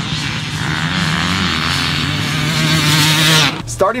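Two-stroke motocross bike engine running on the track, its pitch wavering with the throttle, cutting off suddenly about three and a half seconds in.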